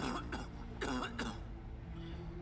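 A man clearing his throat twice, about a second apart.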